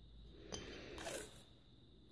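Faint handling of paper washi tape on a glass jar: fingers guiding and pressing the tape around the glass, with a small tap about half a second in and a short rustling scrape about a second in, the loudest moment.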